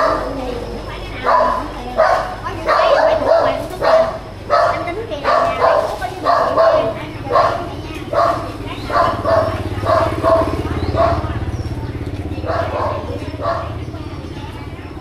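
A dog barking over and over, about one to two barks a second. A motorbike engine passes close by in the middle.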